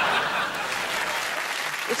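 Studio audience applauding, easing a little after the first half-second.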